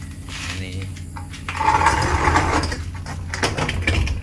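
Steady low hum of the plant factory's air-conditioning. About a second and a half in, a louder rough scraping noise lasts for over a second.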